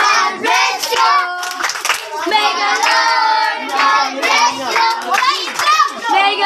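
A group of children singing a birthday song together, with hand clapping.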